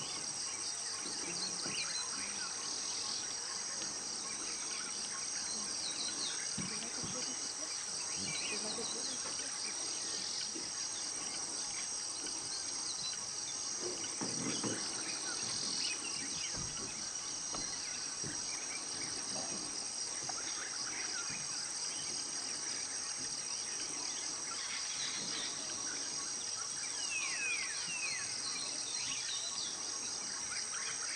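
Rainforest ambience: a steady, high insect chorus with scattered bird chirps, several close together near the end.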